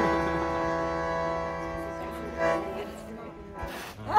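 Bandoneon holding a long sustained chord that slowly fades, then a short final chord about two and a half seconds in that dies away: the closing of a tango.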